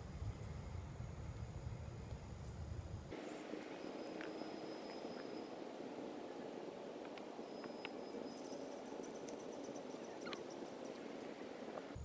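Faint outdoor ambience of someone walking over loose rocks, with scattered light clicks and scuffs, and a few short high chirps. A low rumble of wind on the microphone cuts off abruptly about three seconds in.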